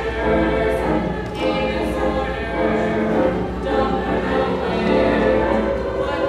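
Mixed choir of male and female voices singing sustained chords.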